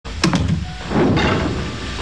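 Sci-fi sliding hatch doors opening one after another, with sharp mechanical clunks and knocks over a low rumble.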